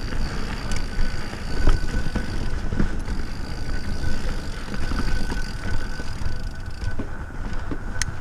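Yeti SB6 mountain bike riding down rocky dirt singletrack. Tyres rumble over the ground, with scattered clatters from the chain and frame on bumps and wind on the microphone. A thin, steady high buzz stops and starts, typical of the rear hub freewheeling while coasting.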